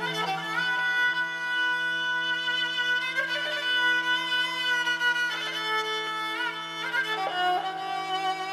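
A bowed string instrument plays a slow, sustained, ornamented melody over a steady low drone: the instrumental opening of a song, before the voice comes in.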